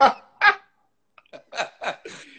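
Men laughing in short separate bursts: two strong laughs, a pause, then a quicker run of shorter laugh pulses in the second half.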